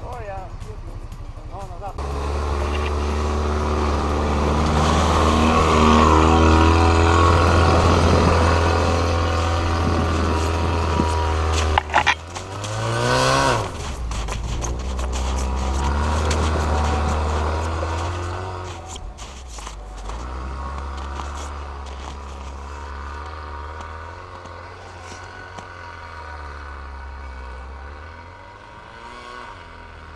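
ATV (quad bike) engines running and revving under load in deep snow, the pitch rising and falling. A quick rev rises sharply about twelve seconds in, and the engines run more quietly through the second half.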